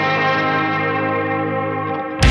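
Intro of a post-hardcore rock song: an electric guitar through echo and distortion effects rings out a held chord, its high end filtered off, easing slightly in level toward the end.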